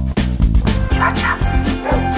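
A dog barking with two short, high yips, the first about a second in and the second near the end, over background music with a steady beat.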